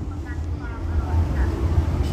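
A low, steady rumble with nothing else clearly on top of it.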